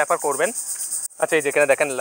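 A man talking in Bengali, pausing for about half a second in the middle. Behind him there is a steady, high-pitched pulsing trill.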